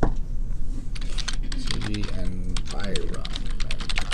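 Computer keyboard typing: a quick run of keystrokes entering a web search.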